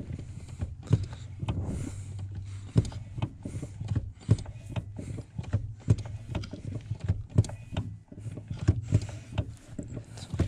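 Subaru Impreza brake pedal pumped by hand during a brake bleed, clicking and clunking with each stroke, roughly once a second, over a steady low hum.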